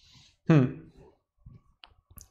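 A man's short "hmm" about half a second in, followed by a few faint, sharp clicks near the end.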